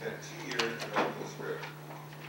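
A man speaking, with a few sharp clicks between half a second and a second in, over a steady low hum.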